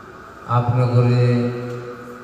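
A man's voice chanting one long held line at a steady pitch into a microphone. It starts about half a second in and fades near the end.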